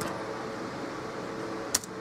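A single sharp keystroke on a laptop keyboard near the end, over a steady background hum.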